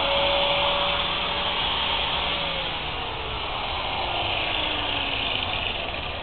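Angle grinder running free with a steady whine, then switched off about two and a half seconds in and winding down, its pitch falling slowly over the next few seconds, over a steady background hiss.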